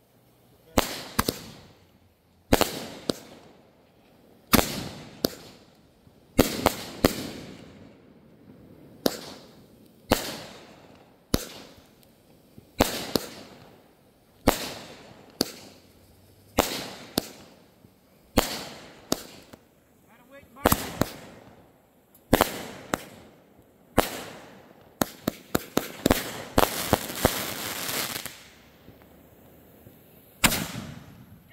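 A repeating aerial firework fires shot after shot into the sky. There is a sharp bang every second or so, each trailing off in an echo. A quicker run of bangs and crackling comes near the end.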